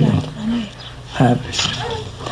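Speech only: a man's voice speaking slowly in short phrases, with brief pauses between them.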